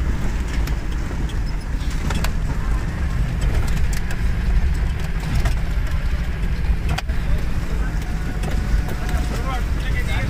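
Steady low rumble of a vehicle's engine and tyres moving slowly over a rough, rocky dirt track, heard from inside the cabin, with a few knocks and a sharp click about seven seconds in.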